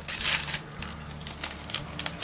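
Paper crinkling and rustling of a small packet, with a few light clicks, as vanilla sugar is added to creamed butter and sugar in a plastic mixing jug. The crinkling is loudest in the first half second, over a faint low hum.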